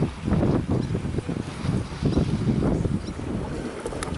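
Wind buffeting the camera's microphone at the seaside: a low, uneven rumble.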